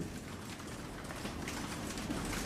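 Low room noise with a few faint, scattered clicks.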